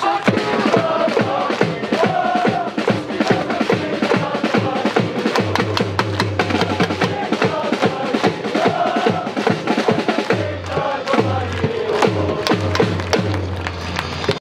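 Football supporters chanting in unison to a steady, fast beat on a bass drum.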